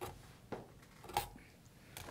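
Scissor blade scraping enamel insulation off the ends of copper magnet wire: three short scratchy clicks in the first second and a half. It is the last of the enamel being cleared so bare copper can make contact.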